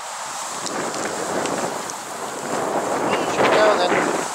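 Wind buffeting the microphone, growing louder toward the end, with a short high voice near the end.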